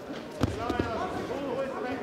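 A single heavy thud of a judoka's body hitting the tatami about half a second in as a throw lands, followed by voices calling out.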